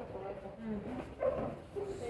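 A student thrown onto a padded folding gym mat, landing in a breakfall with one short thud about a second in, under faint children's voices.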